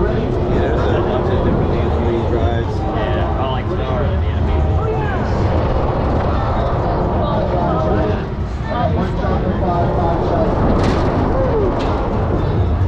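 Indistinct voices of riders and fairgoers over a steady low rumble as the Alakazam fair ride gets moving.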